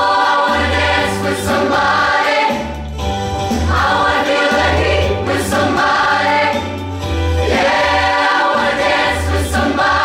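Mixed-voice show choir singing in harmony, in sustained phrases a few seconds long, with a steady low bass line beneath.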